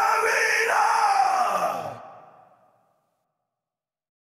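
Drawn-out vocal sound falling in pitch, fading out about two and a half seconds in, then silence.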